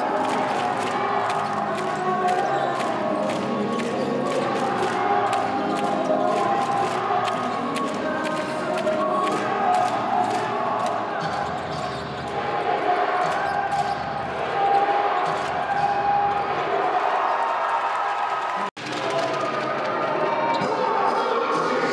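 Basketball arena crowd sound: many voices and cheering over music, with a quick run of sharp knocks through the first ten seconds or so. The sound cuts out for an instant near the end.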